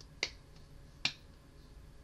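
Two sharp clicks, about 0.8 s apart, the second the louder, over a quiet room.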